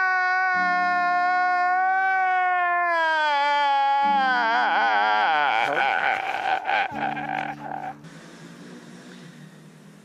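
A man wailing in a long, drawn-out cry with low sustained notes beneath. The cry holds one pitch for about three seconds, then falls and breaks into wavering sobs. About two seconds before the end it gives way to a much quieter, low steady background.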